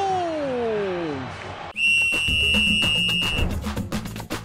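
A broadcast music sting comes in sharply about two seconds in: a high, whistle-like tone held for about a second and a half over a run of percussion hits. Before it, the end of a commentator's long, falling drawn-out call.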